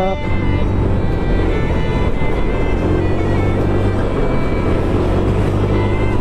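Motorcycle engine and wind noise recorded from the rider's seat while riding at a steady pace, a steady low drone under a constant rushing hiss, with background music laid over it.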